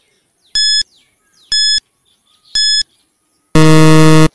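Quiz countdown timer sound effect: three short, high electronic beeps about a second apart, then a louder, lower buzzer near the end as the countdown reaches zero.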